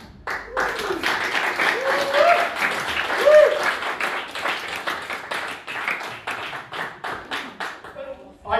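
A small audience applauding, with a few voices calling out in the first few seconds; the clapping thins out near the end.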